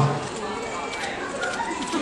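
A live audience in a music venue cheers and calls out in a scattered, mixed way, right after the singer names the next song. The singer's voice cuts off at the start.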